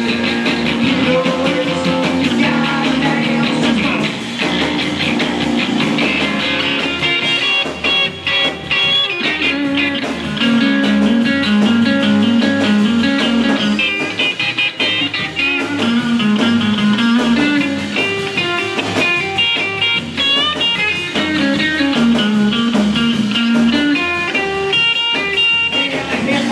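Live rockabilly trio playing an instrumental passage: an electric guitar plays quick lead lines over upright bass and drums.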